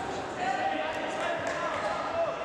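Voices shouting in a large, echoing sports hall, with a drawn-out call starting about half a second in, over scattered dull thuds.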